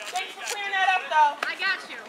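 Voices of people talking and calling out, indistinct words.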